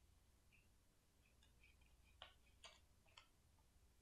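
Three faint snips of scissors cutting through magazine paper, about half a second apart, after some light paper rustling.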